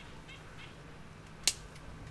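A single sharp click about one and a half seconds in, with a fainter tick just after it, made while hops are being harvested from the bines; faint bird chirps in the first half.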